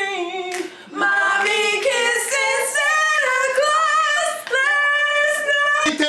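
Female voices singing a cappella, with held, wavering notes and no instruments. There is a short break just under a second in.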